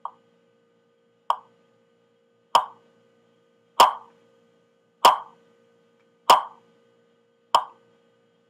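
A metronome ticking at a steady slow tempo, about one click every 1.25 seconds (roughly 48 beats a minute), seven evenly spaced ticks, each a short click with a brief ring.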